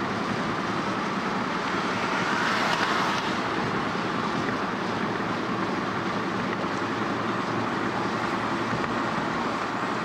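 Steady road noise heard inside a moving car's cabin at highway speed: tyre and engine noise, swelling slightly about two to three seconds in.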